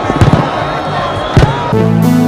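Live stage sound with a couple of sharp thumps, then near the end a sustained electric keyboard chord comes in and holds as the song begins.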